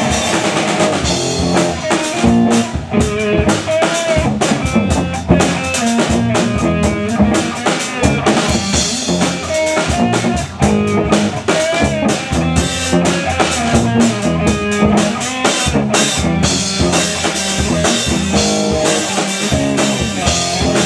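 Amateur rock band playing live: distorted electric guitars through amplifiers over a drum kit, with a steady driving beat.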